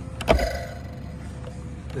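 A single knock with a low thump about a third of a second in, over a steady low rumble.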